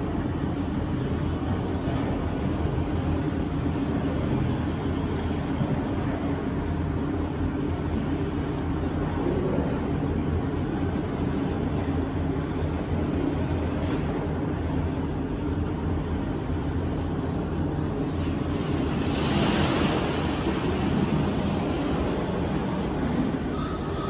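Steady surf-like wash of ocean noise over a low hum, the kind of seashore ambience played in a museum gallery, swelling briefly near the end.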